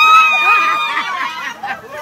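One long, high-pitched shriek that swoops up at its start and is held for about a second before breaking off, followed by a crowd chattering and calling out at a party.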